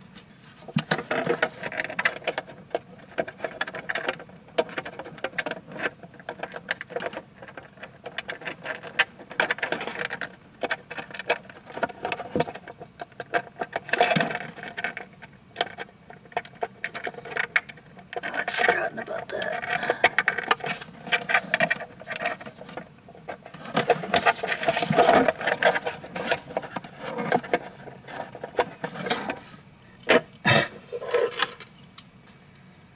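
Irregular clicking, scraping and rustling of hands handling plastic parts and wiring inside a 3D printer's plastic enclosure, as wires are tucked around the base board, with louder bursts of handling now and then.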